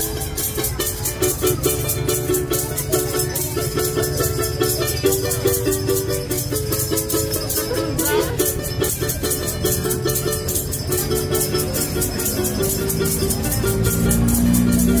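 Small ukulele strummed in a quick, steady rhythm, its chords changing about once a second.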